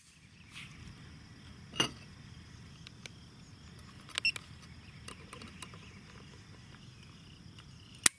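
Quiet outdoor background with a steady faint high insect buzz. A Ruger American Pistol and a trigger pull gauge are being handled: one sharp click about two seconds in and a few small ticks near the middle.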